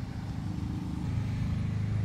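Steady low engine-like rumble with a hum that grows louder about halfway through.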